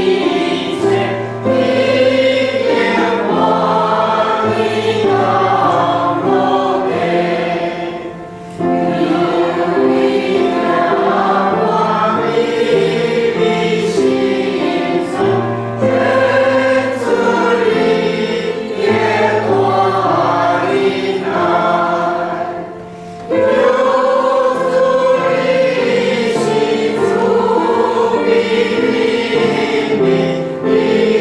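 A congregation of men and women singing a hymn together in unison, in sustained phrases with short breaths between them about eight seconds in and again near 23 seconds.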